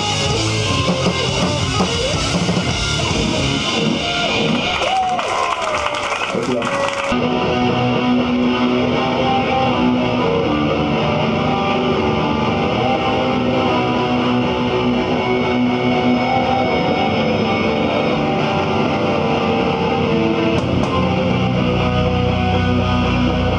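A live hardcore band playing loudly on distorted electric guitars, bass and drums. About seven seconds in the music changes abruptly to held, ringing chords.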